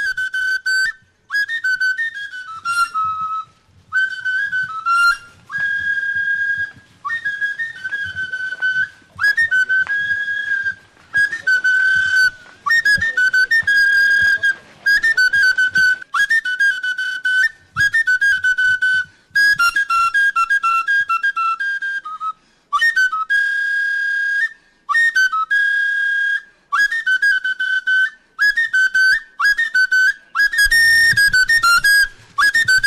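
A high-pitched wind instrument, flute-like, playing a melody in short phrases of a second or two with brief pauses between them.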